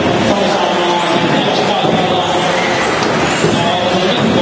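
Electric motors of 1/10-scale 4WD RC buggies whining as the cars race, the pitch rising and falling as they accelerate and slow.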